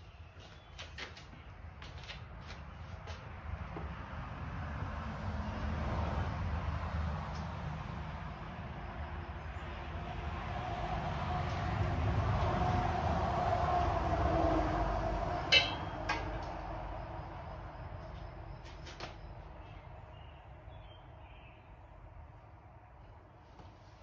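A low rumble with a droning tone that slowly builds to a peak past the middle, then fades away. A few light clicks sound near the start, and one sharp tap a little after the peak.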